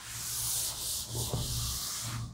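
Blackboard being wiped with a handheld duster: a steady dry rubbing hiss of the duster sweeping across the board.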